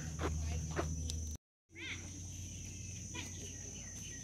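Insects droning steadily at one high pitch over a low outdoor rumble, with a brief cut to silence about a third of the way in and a few short chirping calls just after it.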